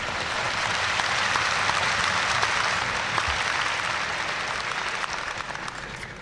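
A large audience applauding steadily, the clapping easing off near the end.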